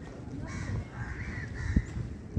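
Several bird calls in quick succession from about half a second to a second and a half in, over a low outdoor rumble, with a single low thump near the end.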